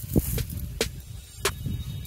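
A steady low rumble with a few sharp clicks and rustles: wind and handling noise on a clip-on microphone as hands and arms move.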